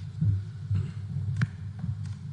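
Low steady hum with soft, irregular thumps picked up by the meeting-room microphones, and a single sharp click about one and a half seconds in.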